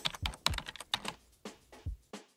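Computer keyboard typing: a quick, irregular run of about a dozen key clicks, about six a second, thinning out toward the end.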